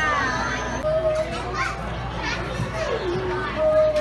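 Indistinct voices of diners, children among them, talking and calling out over one another in a busy restaurant dining room, over a steady low background hum.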